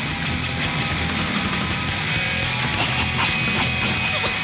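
Loud rock music from a band, with electric guitar to the fore, playing continuously.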